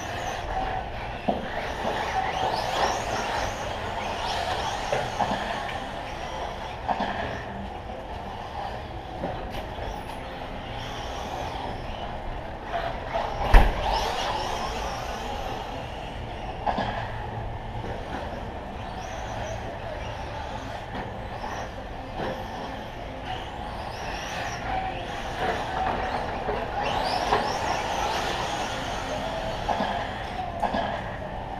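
Radio-controlled short course trucks racing on a dirt track: motor whines rising and falling as they accelerate and brake over the jumps, with a sharp knock about halfway through.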